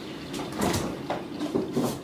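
Kitchen refrigerator door being opened and a carton taken out: a few soft knocks and rustles.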